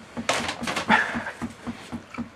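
A man breathing hard and noisily through his mouth with a whimper, from the burning heat of very hot chicken wings. A sharp hissing rush of breath comes about a quarter second in, followed by short, quick puffs.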